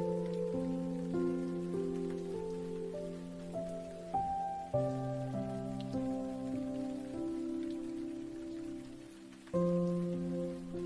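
Slow, gentle piano music, its notes ringing on over one another, with a fresh chord struck near the end. Steady rain falls underneath.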